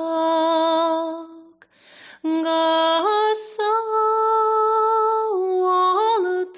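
A woman singing unaccompanied in the sean-nós style, a slow prayer song with long held notes. She breaks for a breath about a second and a half in, then steps up to a higher held note, dropping back down near the end.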